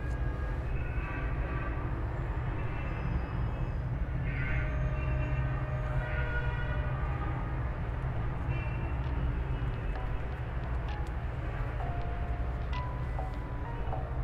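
A steady low rumble, with thin squealing tones and sharp clicks scattered over it.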